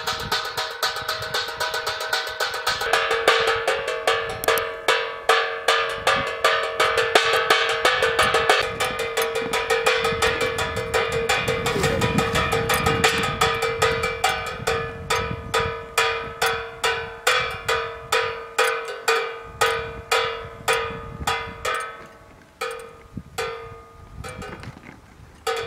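Wind-turned propeller bird scarer: a bent metal wire arm on the spinning shaft strikes an upturned aluminium pan over and over, each hit ringing. The clanging is rapid at first and slows to about two strikes a second, with gaps near the end as the propeller slows.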